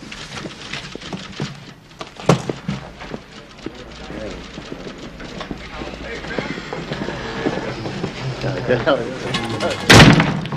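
Indistinct background chatter of a busy office with soft music underneath and scattered knocks, ending in one loud, sharp thud.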